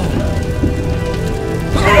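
Sound effects for a trap of wooden stakes collapsing and catching fire: a low rumble with a rain-like crackle, under background score that holds several steady notes.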